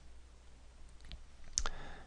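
A few faint, sharp clicks, about a second in and again near the end, over quiet room hiss.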